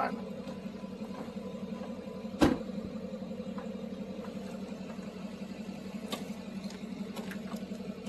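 A car engine running steadily as the car pulls away, with a single sharp click about two and a half seconds in.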